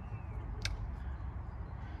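Pond aeration air pump running as a steady low hum, with one sharp click about two-thirds of a second in.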